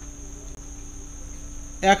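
A steady high-pitched insect trill, crickets by its kind, runs unbroken with a faint low hum beneath. A man's voice cuts in near the end.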